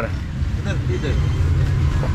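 Auto-rickshaw engine idling with a steady low rumble while stopped, with faint street voices around it.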